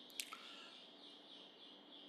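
Near silence: room tone, with one faint click a fraction of a second in.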